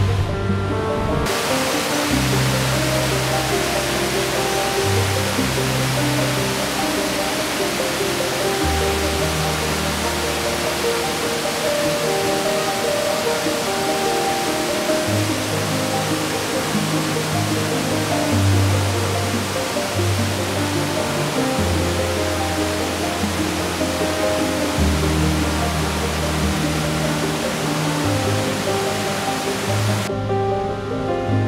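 Steady rush of a waterfall and its rocky stream, coming in about a second in, under background music with slow, held bass notes.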